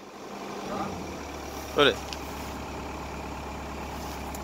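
Diesel engine of a tracked hydraulic excavator comes up about a second in and then idles steadily.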